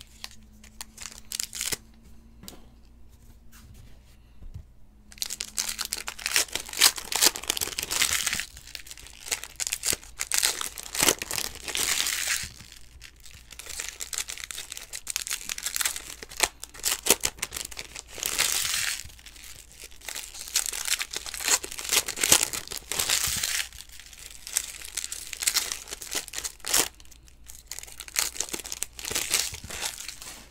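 Donruss football card pack wrappers being torn open and crinkled by hand, with the cards inside handled. After about five quiet seconds it comes in several stretches of crackly rustling and tearing.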